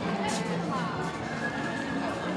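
People's voices mixed with music, with pitched tones that rise and fall.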